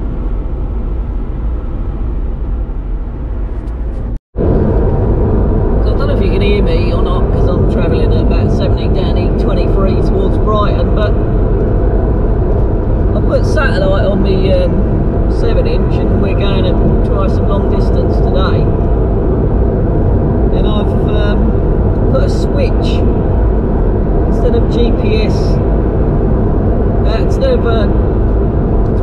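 Steady engine and road noise inside the cabin of a Honda Integra Type R on the move, cutting out briefly about four seconds in.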